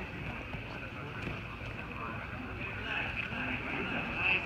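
Indistinct voices of onlookers in a large gym hall over a steady background din.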